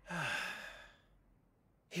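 A man's breathy sigh, lasting just under a second and trailing off.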